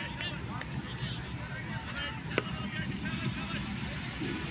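GEU-20 diesel-electric locomotive approaching from a distance: a low steady rumble. Many short high chirps sound over it, with one sharp click about two and a half seconds in.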